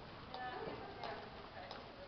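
Hooves of a horse moving at a slow gait on arena footing: a few light ticks, irregularly spaced, with faint voices under them.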